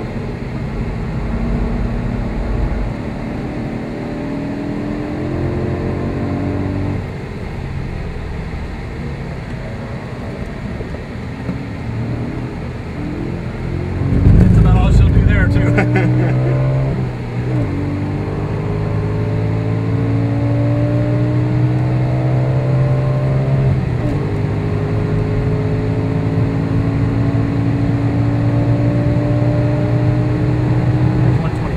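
Cabin sound of a 2009 Audi RS4's V8 accelerating hard on a race track. Its engine note climbs in pitch and drops back at each upshift, over tyre and road noise. About fourteen seconds in, a loud rough rumble lasts a couple of seconds.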